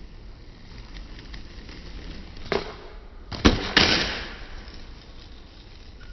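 Skateboard trick on concrete: the tail pops sharply about two and a half seconds in, then the board slaps down hard twice about a second later, and the wheels roll on over the ground after it, fading out.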